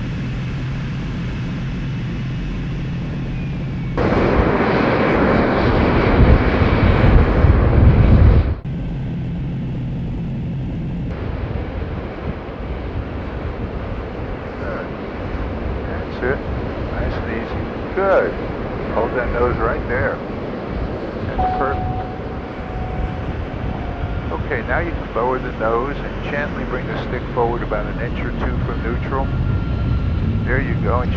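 Aero Vodochody L-39 Albatros turbofan jet during its landing. A steady engine hum with low drone tones gives way about four seconds in to a much louder rushing roar, which cuts off abruptly after about four seconds. Then a quieter, steady run of jet noise follows as the jet rolls out on the runway.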